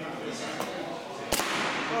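Paintball marker shots: one sharp crack about one and a third seconds in, the loudest sound, with a fainter shot about half a second in.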